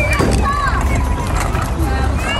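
Children's voices and playground chatter over a steady low rumble, with no clear words.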